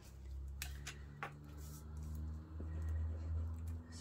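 Hands sliding and handling sheets of card stock on a craft mat: a low rubbing rumble with a few light clicks and taps.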